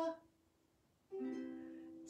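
A sung note trails off, then after about a second of near silence a single ukulele chord is strummed and left ringing, slowly fading.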